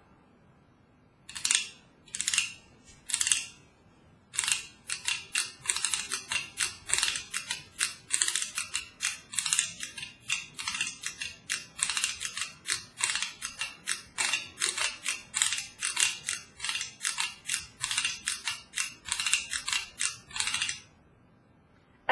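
Plastic fork scraped along the grooves on the side of a metal thermos, played like a güiro: three separate scrapes about a second apart, then a long run of quick, rhythmic scraping strokes that stops about a second before the end.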